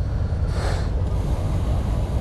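Motorcycle engines idling together in a steady low rumble, with a brief gust of wind on the microphone about half a second in.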